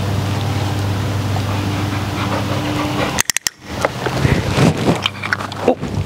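German shorthaired pointer puppy whining, over a low steady hum, with a short sharp clatter about three seconds in.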